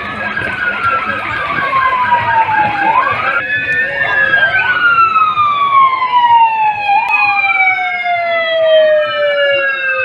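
Ambulance sirens wailing as the ambulances pass close by, more than one siren overlapping. Each cycle is a quick rise in pitch followed by a long, slow fall lasting about three seconds.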